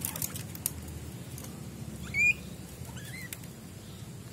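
Guinea pig squeaking: one short, loud, rising squeak about two seconds in, then a fainter rising squeak about a second later.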